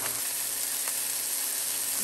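Frog-leg sausage frying in a stainless steel pan in a lot of watery juice: a steady sizzle. The sausage is wet enough that its skin is not crisping.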